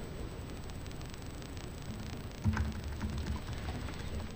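Faint, rapid clicking of computer keyboard typing in a quiet meeting room. About two and a half seconds in there is a brief, low murmur of a voice.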